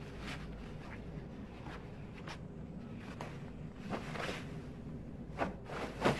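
Steady low rumble of a moving high-speed train carriage, with faint rustling and soft movement sounds and a louder rustle about four seconds in.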